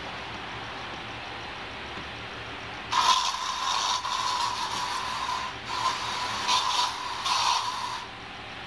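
A small mechanical device starts suddenly about three seconds in. It runs with a steady high whine and a rattling hiss that swells and fades several times.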